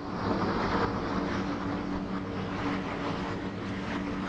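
A steady mechanical drone, like an engine running, with a low hum under a wide hiss. It comes in at the start and holds steady throughout.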